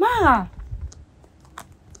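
A woman's short vocal exclamation sliding down in pitch, followed by a few faint clicks.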